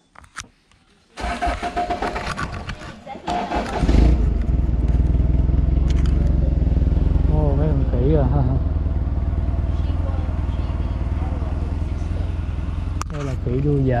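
A motor vehicle engine starts about a second in and then idles with a steady low hum. Voices come in briefly over it.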